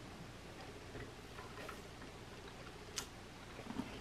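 Quiet room with a few faint small clicks, then one sharp click about three seconds in: the switch of a standard floor lamp being turned on.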